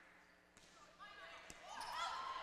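Near silence that gives way to faint gym noise, with a single sharp hit of a hand on a volleyball about a second and a half in.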